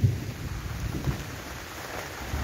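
Low rumble of handling noise on a hand-held camera's microphone while walking over grass and dry stalks, with a sharp thump at the start and a softer one about a second in.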